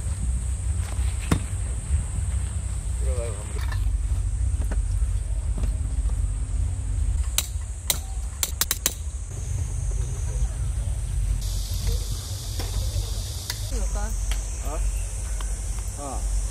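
Campsite background with a constant low rumble and a steady high hiss. Faint voices come and go, and a quick run of sharp clicks falls about halfway through.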